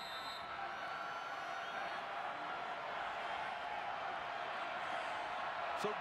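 Stadium crowd noise, a steady din of many voices that swells slightly over the few seconds.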